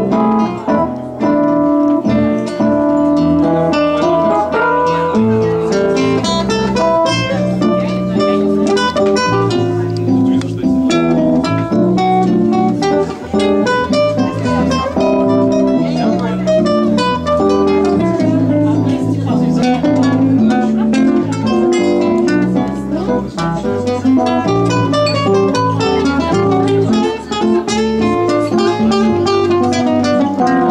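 Nylon-string classical guitar playing a fast, busy line of plucked notes, with sustained lower keyboard notes underneath.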